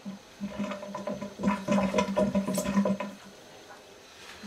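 Hoover washing machine with water rushing through it for about three seconds, loudest in the second half, then dying away.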